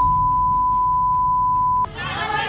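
A censor bleep: one steady, high pure tone laid over the speech, blanking it out, that cuts off suddenly near the end.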